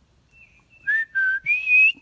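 A person whistling to call a dog back: a faint first note, then three short clear notes, the second a little lower than the first and the last rising in pitch and the loudest.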